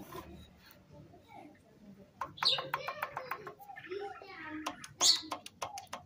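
Pistons of a Chevy 1.6 four-cylinder engine being rocked by hand in their bores, clicking rapidly against the cylinder walls in two short runs. The clicking shows the pistons have excessive play in the worn bores.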